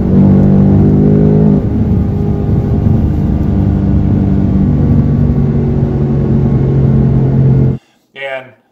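2018 Ford Mustang GT's 5.0-litre V8 heard from inside the cabin, opened up in third gear on the highway. Its loud, steady drone steps down a little in pitch about a second and a half in, then holds steady until it cuts off suddenly near the end.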